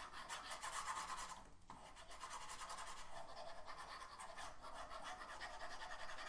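Stylus rubbing back and forth across a drawing tablet to erase the board: a steady, faint, scratchy rasp with a short break a little under two seconds in.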